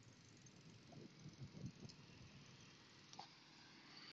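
Near silence: a faint steady hiss with a few soft low thumps.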